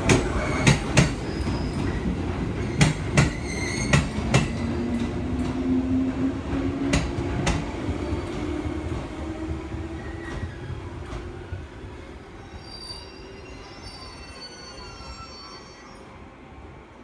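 JR 115 series electric train pulling out of the station and picking up speed. Its wheels click over the rail joints in quick pairs while the drive whine rises steadily in pitch, and the sound fades as the train draws away, leaving faint thin high tones near the end.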